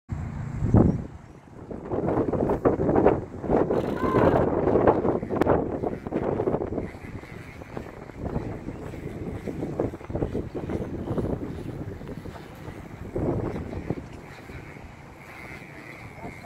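Wind buffeting the microphone in gusts, heaviest in the first half, with faint voices of people behind it.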